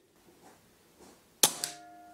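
A single shot from an Air Arms S510 pre-charged pneumatic air rifle in .177: one sharp crack about one and a half seconds in, a quieter click just after, and a short metallic ring that dies away.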